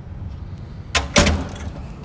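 Commercial door with a spring-loaded slam latch, pried free through the lock hole and let open: two sharp knocks about a second in, a quarter second apart, the second louder with a short rattle after it.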